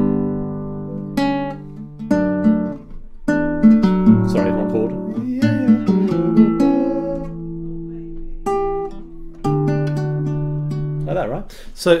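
Nylon-string classical guitar playing a slow sequence of plucked chords, a new chord every second or two, each left to ring. It is a chaconne-style progression in D, moving through suspensions and borrowed notes such as C natural leading to G.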